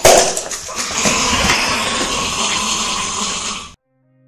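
A loud rushing noise that starts suddenly with a hit, holds steady for over three seconds, then cuts off abruptly just before the end.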